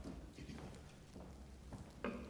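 Faint footsteps, a few soft irregular knocks about half a second apart, as a reader walks up to the lectern over a low steady room hum.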